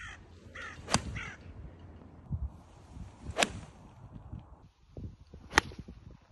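Three golf shots, each a single sharp crack of an iron striking the ball off the turf: one about a second in, one midway, and one near the end.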